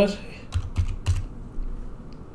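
Keys tapped on a computer keyboard, a quick run of keystrokes in the first half, entering a one-time authenticator code.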